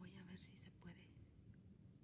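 Near silence, with a faint, soft voice trailing off in the first second.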